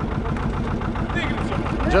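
Rescue boat's engine idling steadily, a low even rumble, with faint voices over it.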